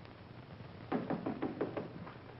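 Rapid knocking on a wooden door, about six raps in a second, about halfway through.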